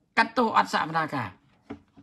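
Only speech: a man talking for about a second and a half, then a brief click near the end.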